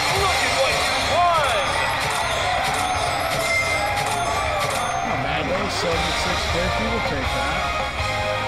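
Press Your Luck slot machine's win-tally music and chimes playing as the credit meter counts up a bonus win, over steady casino background din.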